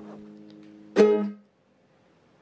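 A strummed chord on an acoustic stringed instrument rings and fades, then about a second in a single sharp, loud strum that stops abruptly about half a second later.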